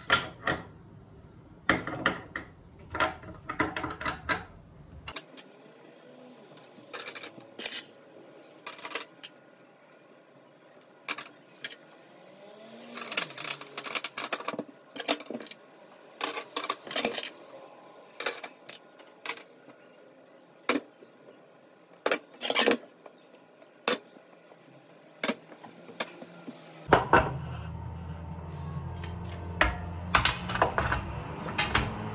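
Metal gas-hob burner caps clinking and clattering as they are dried with a cloth and set back onto the burners one by one. The sharp clinks come irregularly, with a busy cluster about halfway through, and a low steady hum comes in near the end.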